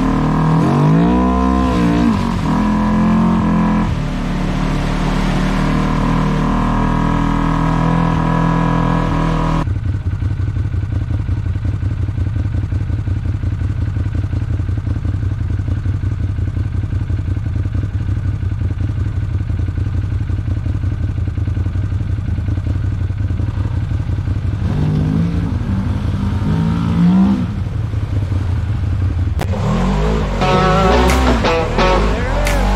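Side-by-side UTV engines revving up and down. About ten seconds in, the sound changes abruptly to a steadier low engine drone, and there is more revving again near the end.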